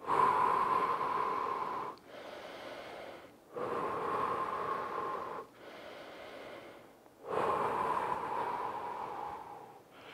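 A man breathing deeply and slowly as he recovers from exertion: three long, audible exhales of about two seconds each, with quieter inhales between them.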